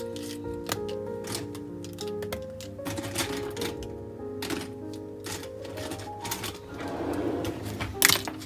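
Soft instrumental background music, with scattered light clicks and taps of plastic pens being set down on and picked up from an open paper notebook on a desk; the loudest click comes at the very end.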